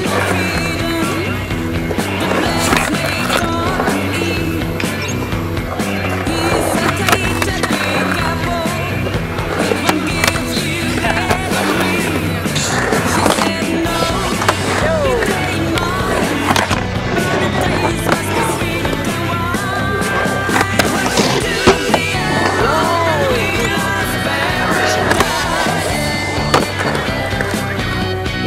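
Music playing over skateboarding on a concrete park: wheels rolling and repeated sharp clacks of the board hitting and landing.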